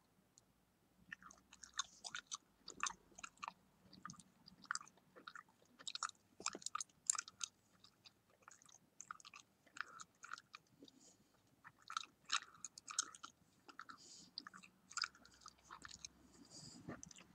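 Bubble gum chewed close to the microphone: irregular wet smacks and clicks, beginning about a second in and coming in quick clusters.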